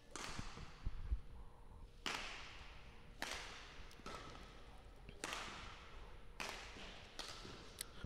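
A badminton rally: racket strikes on the shuttlecock, five sharp hits spaced about one to two seconds apart, each ringing briefly in a large hall, with a few faint low thuds early on.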